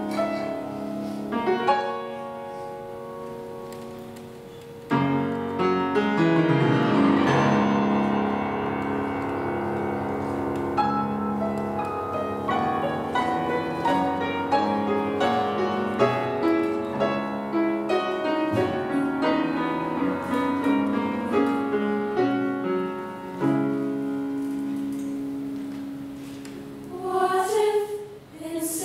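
Grand piano and a mixed choir performing a slow piece together, the music swelling suddenly about five seconds in.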